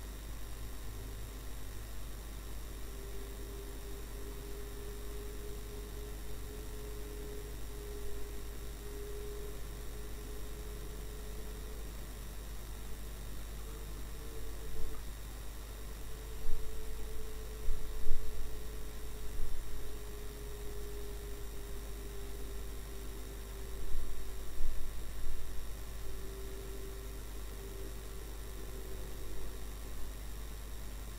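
Steady drone of a car's cabin as picked up by a dashcam, with a low rumble and one hum-like tone that drifts slowly up and down in pitch over a fixed electrical whine. A few louder knocks or rattles come about halfway through and again a few seconds later.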